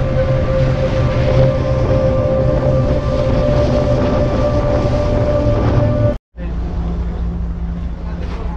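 Low, steady rumble of a passenger ferry's engine and wind under way, with a sustained steady tone over it; about six seconds in the sound cuts off abruptly and a lower, steady hum follows.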